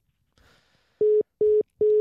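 Smartphone's call-ended tone as the speakerphone call hangs up: three short beeps at one steady pitch, evenly spaced about half a second apart, starting about a second in.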